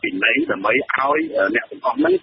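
Speech only: a voice talking steadily with a narrow, radio-like sound.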